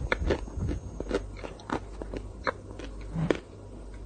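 Close-miked mouth sounds of someone eating chocolate ice cream: chewing and biting, with many sharp wet clicks and smacks. The clicks ease off for the last half second or so.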